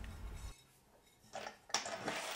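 Faint clinks and knocks of terracotta flower pots and metal hardware being handled, with the sharpest clink near the end.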